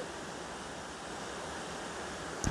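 Steady low background hiss in a pause between sentences of speech, with no distinct events.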